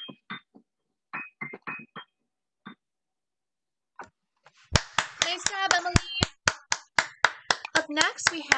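A piano plays a few short, detached final notes, then falls silent. About two seconds later several people clap over a video call, a quick run of sharp claps with voices cheering among them.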